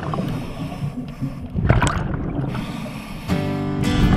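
Underwater scuba audio: a scuba regulator breathing, with a burst of exhaled bubbles about two seconds in. A background song begins a little after three seconds in.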